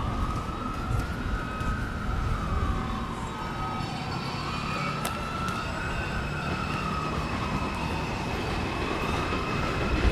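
A siren wailing, its pitch sliding slowly up and down about once every four seconds, over a steady low rumble.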